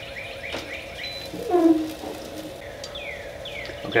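A songbird chirping: a run of quick falling chirps at the start and two longer falling whistles near the end, over a faint steady hum. About halfway through there is a brief, louder low hum like a voice.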